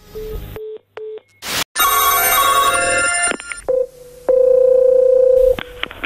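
Telephone line tones: about three short beeps at one pitch as the call is cut off, then a short burst of noise and a second or so of bright ringing, then a long steady ring tone as the next number rings.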